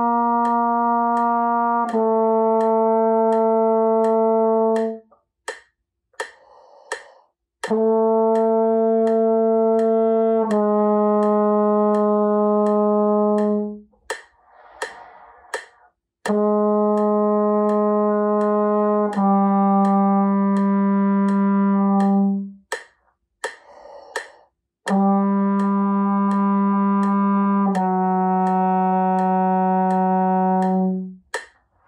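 Trombone playing long tones: four pairs of held notes, each about three seconds long and tongued straight into a lower second note, with a breath taken between pairs. A steady clicking beat runs underneath.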